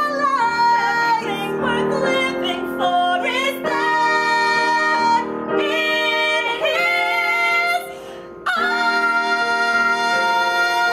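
Two women singing a musical-theatre duet in long held notes. After a short break a little before eight seconds in, they hold one last long note together.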